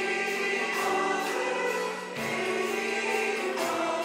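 Mixed choir singing a Turkish art music (Türk sanat müziği) song in unison with instrumental accompaniment.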